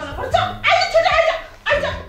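A woman crying out in distress: a string of short, high-pitched wailing cries.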